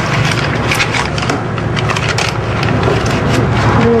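Irregular crackling and clicking over a steady low background hum.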